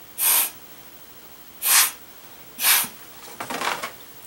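Three short, sharp puffs of breath blown through a drinking straw to push wet watercolour paint across the paper, followed by a softer rustle near the end.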